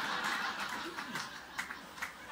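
Audience laughing, the laughter dying away.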